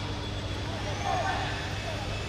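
Live pitch-side sound at a floodlit football match: a steady low rumble and hiss with faint distant shouts from players.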